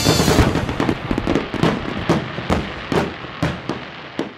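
Fireworks popping and crackling in a quick, uneven series of sharp reports that grows steadily fainter and dies away.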